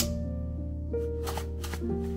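Soft background music with sustained piano-like notes. Over it there is a sharp click at the start, then three short rustles of a paper packet of Tide detergent being handled.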